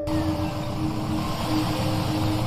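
Land Rover Defender driving: steady engine and road noise, with a low held music note over it.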